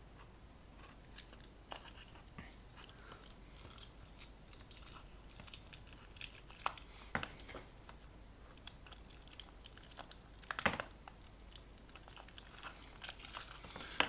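Faint handling noise from a plastic disco-light bulb housing, pliers and insulating tape: scattered light clicks and taps, with a sharper knock about ten and a half seconds in, and some crinkling of tape.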